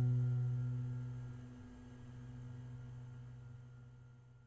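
The last strummed chord of an acoustic guitar ringing out, its held notes slowly dying away to nothing near the end.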